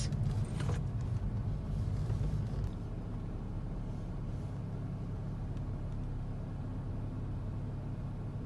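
Kia Stinger GT's twin-turbo V6 and the car's running noise heard from inside the cabin: a steady low rumble as the car creeps along at low speed in Drive.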